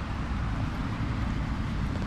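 Steady low rumble of distant motorway traffic and wind on the microphone, with no separate knocks or scrapes standing out.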